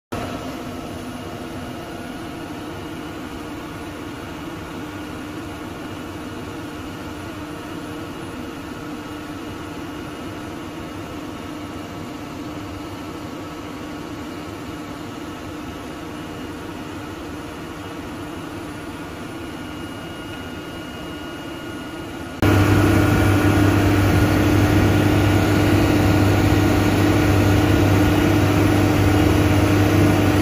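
Continuous flight auger piling rig running steadily: a steady machine hum with several held tones and no hammer blows. It becomes abruptly much louder and heavier in the low end about three-quarters of the way through.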